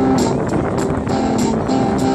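Electric guitar played through a small portable amplifier: a melody of held notes that step from one pitch to the next.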